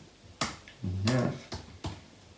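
A few sharp computer keyboard keystrokes, spaced well apart, as code is typed.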